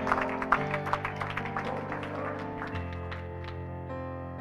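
Electronic keyboard playing sustained chords, with the bass notes changing about half a second in and again near three seconds, gradually getting softer.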